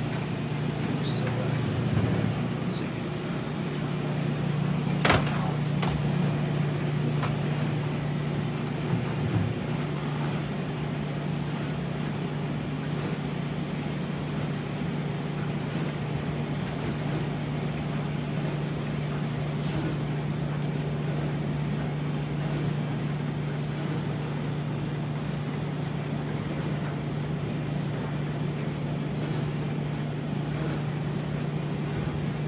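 Steady low hum of running coin-op laundry machines, with a sharp click about five seconds in.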